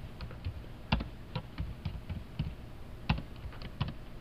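Handling noise from a cloth flag and plastic flowers being folded and gathered: irregular light clicks and taps, a few a second, with two sharper knocks, about a second in and about three seconds in.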